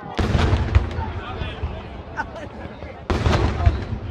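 Fireworks going off in a display: two loud blasts about three seconds apart, each followed by a low rumble that dies away over about a second, with crowd voices in between.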